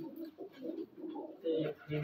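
Teddy pigeons cooing: low coos that come and go, with a stronger one near the end.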